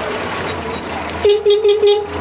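Steady vehicle running noise, then a van's horn tooted four times in quick succession a little past halfway. It is the meter reader announcing his arrival to the customer from the vehicle.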